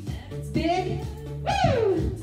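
Pop song playing for a workout, with a voice over the beat: a held note about half a second in and a long note sliding down in pitch near the end.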